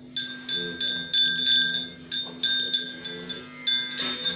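Metal pooja bell rung in quick repeated strikes, about three a second, each stroke ringing briefly, over a steady low hum.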